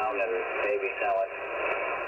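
Single-sideband voice from a weak amateur station on the 20-metre band, heard through a Yaesu FT-710 transceiver: thin, muffled speech with a hiss of static beneath it, its highs cut off sharply by the receiver's 250 to 2,800 hertz filter.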